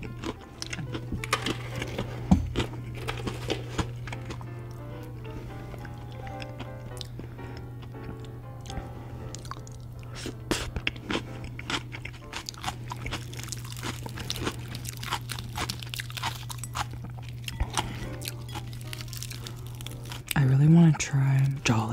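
Close-up crunching and chewing of crispy fried food, many sharp crunches throughout, over soft background music and a steady low hum.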